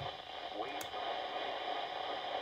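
Midland WR120EZ weather radio's speaker giving a steady static hiss, with the NOAA weather broadcast voice only faintly coming through: electrical interference from a lamp that has just been switched on, degrading reception. A single click comes about 0.8 seconds in.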